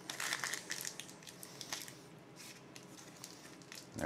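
Parchment paper crinkling as the ends of a paper-wrapped roll are twisted shut. The rustling comes in short bursts, louder in the first second and a half, then fainter with a few scattered crackles.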